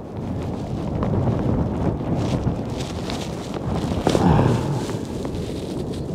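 Strong wind buffeting the microphone, a steady low rumble that swells briefly about four seconds in.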